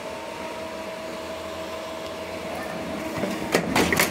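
Touchline CF375 creaser/folder running: a steady machine hum with a faint slowly rising whine that grows louder, then rapid, irregular clicking and clattering from about three and a half seconds in.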